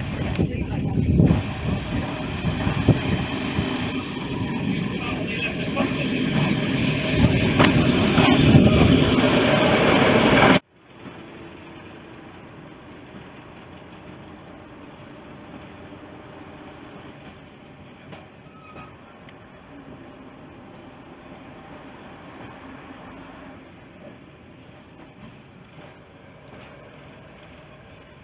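Diesel multiple unit pulling into the station, its engines and wheels on the rails growing louder for about ten seconds. Then a sudden cut to a much quieter, steady running rumble heard from aboard the moving train.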